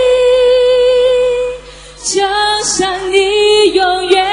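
A woman singing a pop song into a microphone with no clear accompaniment. She holds one long note for about a second and a half, pauses briefly, then sings the next phrase.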